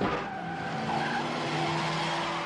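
Car tyres skidding and screeching, a steady car-chase sound effect.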